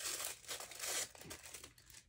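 A small printed accessory bag being torn open by hand, with crinkling of the wrapper. Several short tearing bursts come in the first second, then it dies away near the end.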